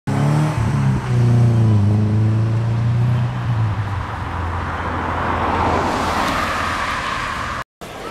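A car engine running close by, its low note shifting in pitch about two seconds in, then giving way to road and tyre noise from passing traffic. The sound cuts off abruptly just before the end.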